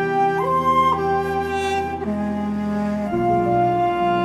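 Flute playing a slow melody over sustained chords, the notes and harmony changing about once a second.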